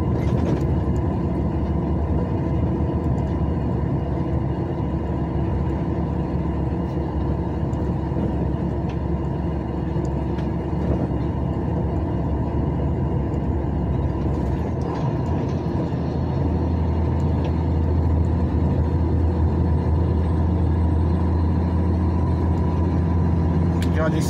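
Steady engine and tyre noise heard from inside the cabin of a moving vehicle on the highway. About two-thirds of the way in, a low drone grows stronger and holds.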